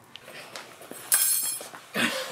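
A brief clinking rattle about a second in, lasting about half a second.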